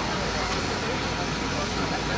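Low, steady engine rumble of a yellow SŽDC rail service vehicle built by CZ LOKO, running as it eases slowly along the track, with a crowd's chatter around it.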